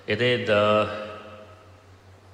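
A man's voice at a microphone: one short drawn-out utterance that ends on a held syllable in the first second, then a pause.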